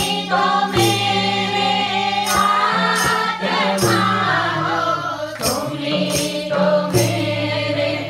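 A group of women singing a devotional song together, led on microphones, over a regular hand-drum beat and hand claps.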